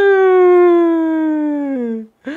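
A man's voice holding one long, drawn-out vowel for about two seconds, pitched well above his talking voice and sliding slowly down, dipping further just before it stops.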